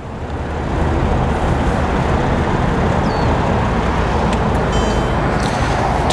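Steady low rumble of motor-vehicle noise that builds over the first second and then holds.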